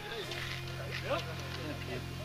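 A motorcycle engine idling steadily, a low even hum, with faint voices in the background.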